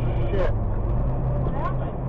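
Steady low drone of a semi truck's engine heard inside the cab while it drives along the highway, with a couple of brief voice fragments.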